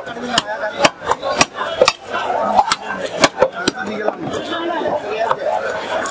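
Fish being cut at a market stall: a run of sharp, irregularly spaced chopping knocks, several times a second, over busy background chatter.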